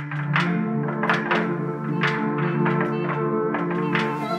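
Tapes.01, a cassette-tape sample instrument for Kontakt, playing a preset: a sustained chord with a run of plucked notes about three a second over it.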